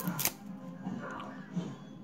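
Glossy 1991 Stadium Club trading cards, stuck together in the pack, being pulled apart and flipped by hand: two sharp snaps right at the start, then faint handling.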